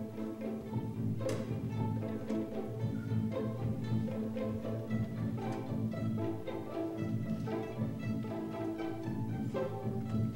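Student string orchestra playing: violins, cellos and double basses bowed together, in a busy line of quickly changing notes.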